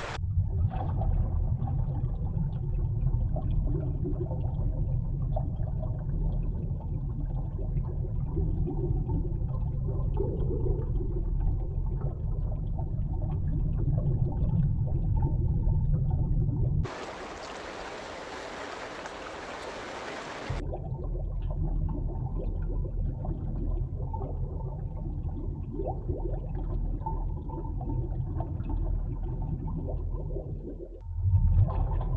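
Water sound from the soundtrack of underwater footage: a steady, deep rumble, abruptly switching to a brighter rushing hiss for a few seconds a little past halfway before the deep rumble returns.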